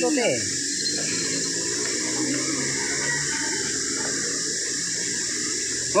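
Steady outdoor background hiss, strongest high up, with no distinct event in it; a voice says one short word at the very start.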